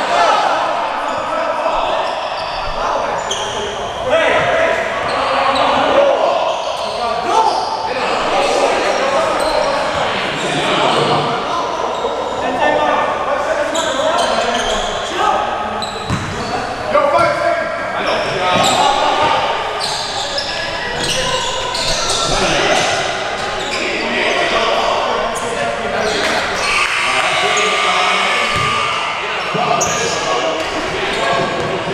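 Basketball bouncing on a gym floor, with players and spectators shouting and chattering throughout, echoing in the large hall.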